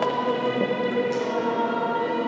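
A choir singing, holding long notes with a change of note about half a second in.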